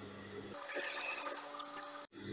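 Satin fabric rustling faintly as hands smooth and slide it across the sewing-machine table, starting about half a second in.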